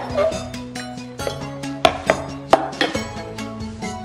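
Background music with held tones, a bass line and a few sharp percussive hits.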